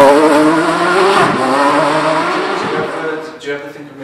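Peugeot 206 rally car's Cosworth V6 engine pulling hard, its pitch rising steadily as it accelerates away and fades.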